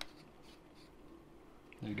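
Small handling sounds from a fountain pen being put back together in the hands: a sharp click at the start, then a few soft ticks and faint rubbing.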